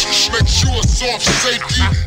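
Slowed-down hip hop track: pitched-down rapped vocals over a heavy bass line and a steady drum beat.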